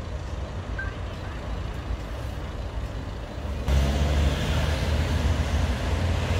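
Outdoor road traffic noise: a steady low rumble, which jumps louder about three and a half seconds in.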